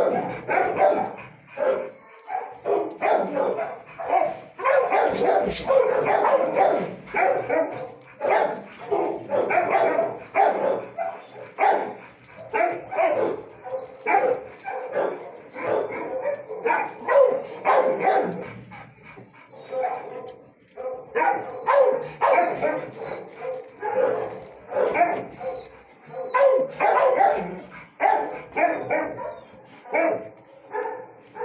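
Dogs in shelter kennels barking almost without pause, bark after bark in quick succession.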